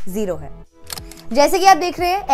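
A woman speaking Hindi-English over background music, with a short click about a second in, during a brief gap in her speech.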